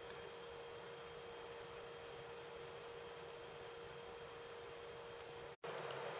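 Faint room tone: a steady low hiss with a thin, steady hum. It drops out for an instant near the end, then comes back slightly louder.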